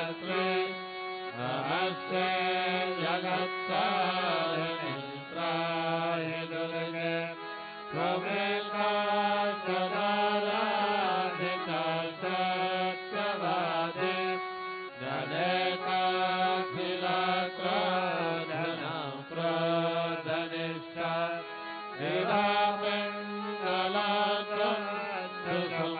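Devotional chanting of Hindu mantras during an evening aarti, in phrases several seconds long, over a steady low drone.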